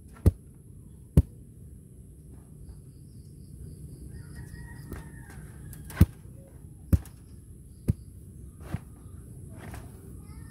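A heavy homemade wooden tamper, a log with a wooden handle, is dropped onto damp, sticky soil in a trench to compact it. It gives six dull thuds, two near the start and four in the second half, about a second apart.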